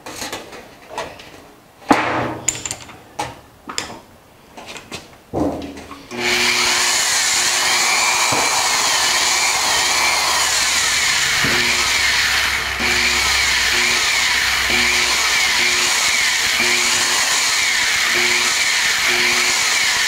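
A galvanized sheet-metal panel being handled and lined up, with scattered clanks and knocks. About six seconds in, the electric drill that drives the bead roller starts and runs steadily, its motor pitch wavering, as the sheet is fed through the dies to roll a bead.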